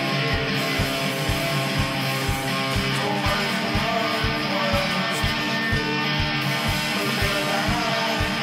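Rock music with layered electric guitars over a steady low drum beat of about two to three beats a second.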